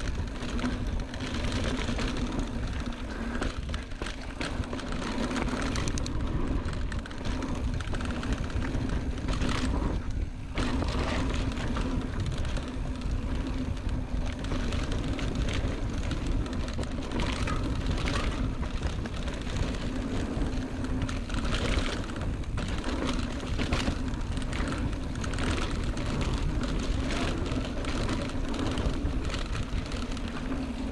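Mountain bike rolling fast along a dirt singletrack: a steady run of tyre noise on dirt and leaves, with frequent small clicks and rattles from the bike over roots and rocks, and wind rumbling on the camera microphone.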